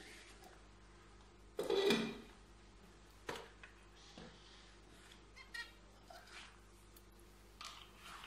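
A few light clicks and knocks of a small plastic food chopper being set down and handled on a tiled floor. About two seconds in there is one louder, short voice-like sound.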